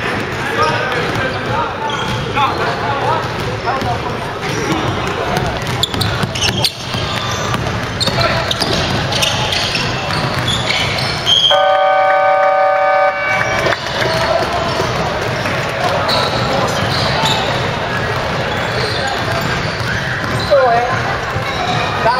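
Gym scoreboard buzzer sounding one steady, unwavering note for about two seconds midway, the loudest thing heard: the end-of-game signal, with the game clock run down to zero. Around it, players' voices and basketballs bouncing on the hardwood floor echo through the hall.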